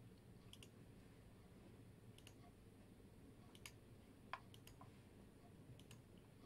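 Faint computer mouse clicks, several scattered through near silence, the sharpest about four and a half seconds in.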